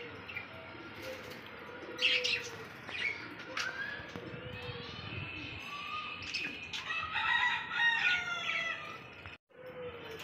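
A flock of budgerigars chirping and warbling, with a few brief wing flutters; the chattering grows busier about two-thirds of the way in.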